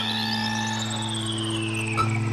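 Electronic music: a held low synthesizer drone under high synth tones that sweep in pitch, one climbing steadily and one slowly falling.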